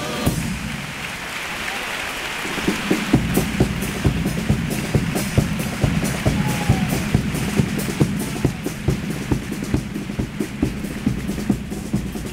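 Theatre audience applauding after a carnival chirigota's sung piece. About three seconds in, the group's drums (bass drum and snare, the bombo and caja of a chirigota) start up in a quick, uneven beat under the clapping.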